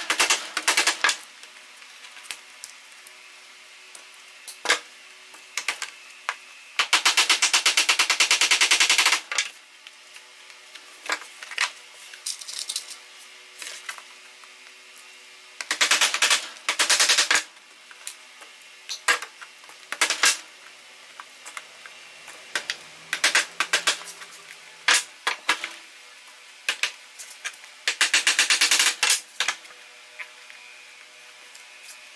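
Small hammer driving small nails through the edge of a PVC pipe into wooden dividers, in four bursts of rapid taps with scattered single strikes between.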